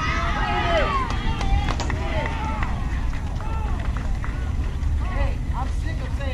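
Young girls' voices calling and shouting across a softball field, several at once and none clearly worded, over a steady low rumble.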